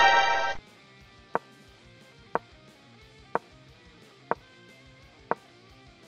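A loud, buzzy distorted electric-guitar sting ends about half a second in. Faint background music follows, with five sharp knocks evenly spaced about one a second.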